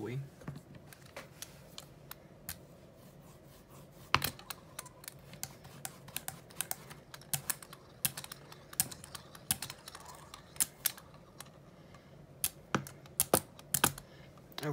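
Irregular sharp clicks and taps from hands handling acrylic paint and tools on a gel printing plate, starting about four seconds in and coming several a second at times; the loudest click is the first.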